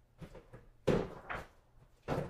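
Knocks and bumps of things being handled on shelving: a faint knock, then a loud knock just under a second in and a second one a moment later.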